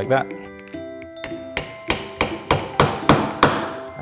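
Claw hammer driving a nail into a cedar board: a run of sharp strikes, several a second, heaviest in the second half, over background music.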